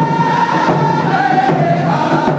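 A group of men singing together in a high, held note while beating hand-held frame drums in a steady beat; the sung note drops in pitch about halfway through.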